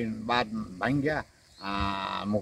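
An elderly man speaking in slow, drawn-out syllables, holding one vowel at a steady pitch for about half a second near the end.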